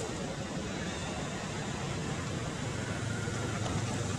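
Steady background noise with a low motor-vehicle rumble that grows louder in the last second.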